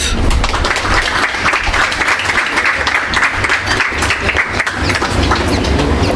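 Audience applauding steadily: a dense patter of many hands clapping.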